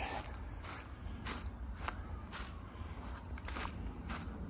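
Footsteps crunching through dry fallen leaves and mulch on a woodland path, about two steps a second, over a steady low rumble.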